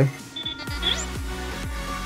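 Electronic music from the Sphero BB-8 app playing through a phone's speaker, coming in about half a second in with a steady bass beat of roughly two beats a second. A couple of short high electronic chirps sound just before the beat starts.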